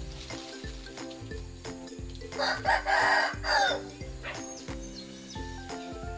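A rooster crowing once, starting about two seconds in and lasting about a second and a half; it is the loudest sound, heard over steady background music with a beat.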